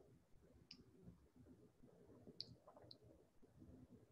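Near silence with three faint, short, high-pitched clicks: one under a second in, then two close together a little past halfway.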